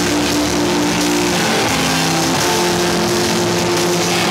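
Live screamo band playing loud, heavily distorted electric guitars, holding sustained chords that shift pitch every second or so over a dense wash of noise.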